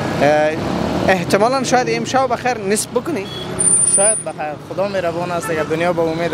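Men talking, with street traffic running underneath. A brief high squeak sounds about three and a half seconds in.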